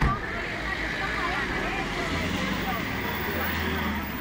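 A car engine running close by, with a steady low hum that grows stronger about halfway through. A single thump is heard right at the start.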